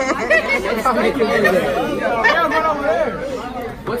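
Several voices talking over one another: loud, overlapping chatter from a group of people.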